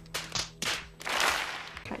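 A few sharp cracks, then about a second of crowd cheering and clapping over a steady low hum.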